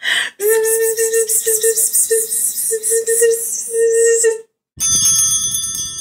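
A woman's voice buzzing like bees coming out of the hive, a steady high "bzzz" in several stretches over about four seconds. Then, after a brief pause, a bell rings with several high, lingering tones.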